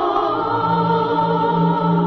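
Choral singing in a film song: voices hold long, sustained notes, and a low held note comes in about half a second in.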